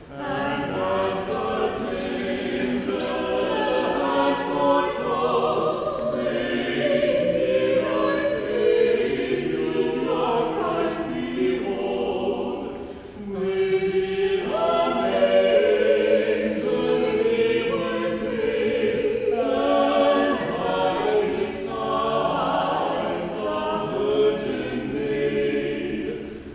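A small church choir of robed singers singing a hymn-like piece together in sustained phrases, with a brief pause for breath about halfway through.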